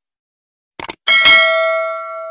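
A quick double mouse click, then a bright bell ding about a second in that rings on and slowly fades: the click and notification-bell sound effects of an animated subscribe button.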